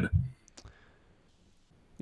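Near silence after the end of a spoken word, with a couple of faint clicks about half a second in.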